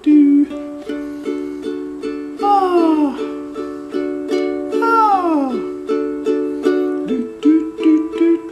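Deviser concert ukulele with a capo on the second fret for D tuning, strumming chords in a steady rhythm. Twice, about two and a half and five seconds in, a falling slide in pitch sounds over the chords.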